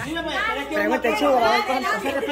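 Several people talking at once: a group's chatter.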